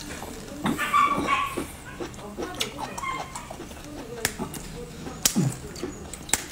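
Wet mouth sounds of sucking and biting on a raw geoduck siphon: repeated sharp clicks and slurps, with a short high-pitched squeak about a second in.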